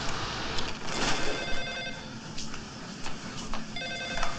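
Telephone ringing with two electronic rings, one about a second and a half in and another near the end.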